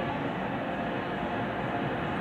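Steady background noise: an even rumble and hiss with no distinct events.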